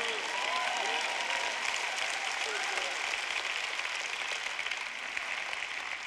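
An audience applauding steadily, with a few faint voices calling out in the first seconds; the clapping tapers off slightly near the end.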